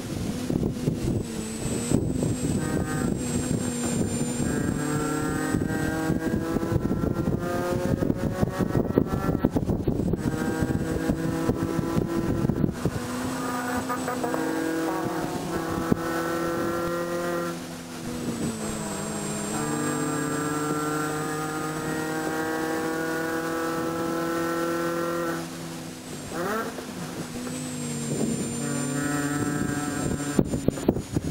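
A 2006 Mini Cooper S JCW's supercharged four-cylinder engine at race pace, heard from inside the stripped cabin. It climbs in pitch as it pulls through third and fourth gear, and drops at gear changes and lifts several times. Heavy rattle and clatter runs under it through the first half.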